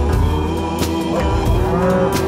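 Background music with a steady beat, and over it in the second half a cow mooing in one long call that rises and falls.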